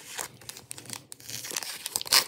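Plastic wrapper of a Topps Gallery baseball card pack being torn open and crinkled by hand: a run of crackles and rustles that grows busier near the end.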